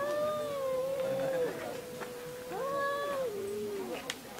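Domestic cat yowling: one long, drawn-out caterwaul that rises again in pitch about two and a half seconds in and then slides down near the end. It is the warning call of a standoff between two rival cats, said to be fighting over a female.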